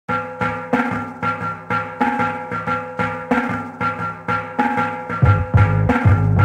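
Electronic dance track opening with a fast, repeating pattern of struck percussion over held pitched tones. A deep, heavy bass comes in about five seconds in.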